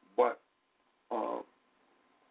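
Two short voiced sounds about a second apart, the second longer and held, heard over a telephone line with a faint steady tone underneath.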